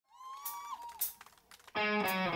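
A live rock band starting a song: two sharp ticks in the first second, then the band comes in with a sustained electric guitar chord near the end.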